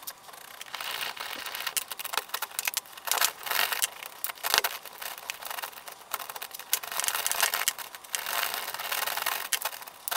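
A socket ratchet clicking and a steel spanner scraping and knocking on the bolts of a steel clamping jig as the bolts are undone. The sound comes in runs of rapid clicks a second or two long, with single metallic knocks between them.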